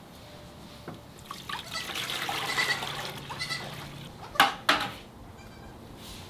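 Water poured from a plastic bucket, a splashing trickle that runs for a couple of seconds, followed by two sharp knocks about four and a half seconds in.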